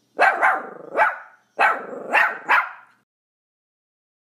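A dog barking: six short barks in two runs of three.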